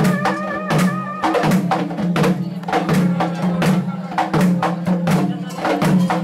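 Traditional Kerala ritual music: drums struck in a steady, repeating rhythm over a sustained low drone. A wind instrument's held, wavering notes stop about a second in, leaving the percussion.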